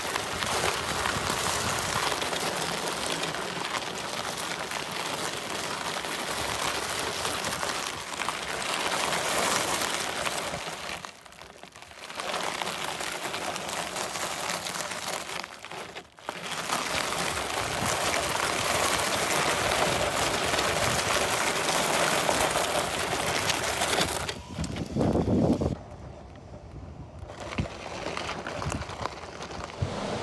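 Loose gravel crunching steadily under the aggressive-tread foam-filled tyres of a Quantum Stretto power wheelchair as it drives. The crunching breaks off briefly twice and dies down about three-quarters of the way in.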